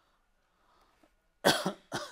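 A person coughs twice in quick succession, about one and a half seconds in, the first cough the louder.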